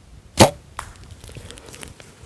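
A bow shot at a whitetail buck: a single loud, sharp crack of the string and the arrow striking the deer, under half a second in. A smaller knock follows, then the buck crashing off through dry grass and brush.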